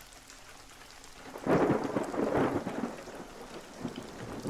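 Steady rain with a roll of thunder that swells about a second and a half in and dies away over the next two seconds.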